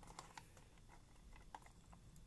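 Near silence with a few faint small clicks: jumper-wire connectors being pushed onto the header pins of a Gotek floppy drive emulator's circuit board.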